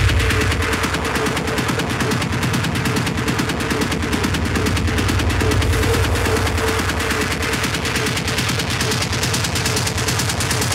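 Techno played over a club sound system during a breakdown: the deep kick drum drops out at the start, leaving a fast, rattling rapid-fire run of noisy percussion hits over a steady held tone.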